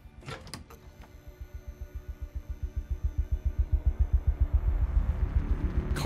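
TV drama soundtrack: a fast, low, even pulse of about seven beats a second that swells steadily louder, building tension.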